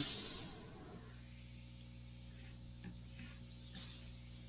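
Quiet room tone with a steady low hum, broken by a few faint, short clicks in the second half: buttons on a Fujifilm X-series camera being pressed to set the view mode to EVF only.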